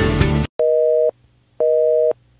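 Music cuts off abruptly about half a second in, followed by a North American telephone busy signal: a two-tone beep, half a second on and half a second off, sounding twice.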